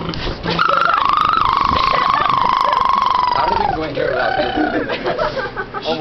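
A person's voice holding one long, rough, drawn-out sound for about three seconds, slowly sinking in pitch, followed by short, broken vocal sounds.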